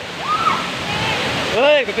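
A waterfall and its fast river run as a steady rushing hiss. A brief voice sounds about a third of a second in, and a loud voice calls out near the end.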